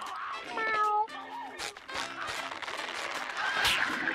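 A cartoon snail's cat-like meow, one short call about half a second in, over light background music, with a brief hiss-like noise near the end.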